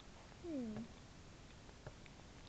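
A single short vocal sound, falling in pitch and lasting under half a second, about half a second in.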